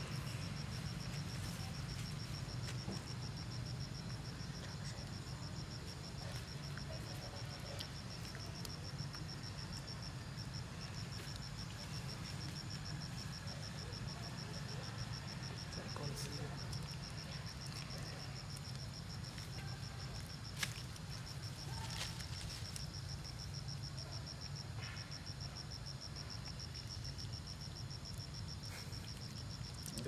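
Insects trilling: a steady high-pitched, finely pulsing chorus over a low steady rumble, with a few sharp clicks, the sharpest about two-thirds of the way through.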